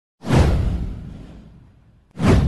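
A whoosh sound effect with a deep low boom that starts suddenly just after the beginning, sweeps downward in pitch and fades away over about a second and a half.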